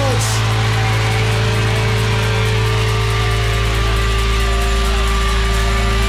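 A live rock band holds one loud, distorted chord as a song rings out, with the notes steady and unchanging.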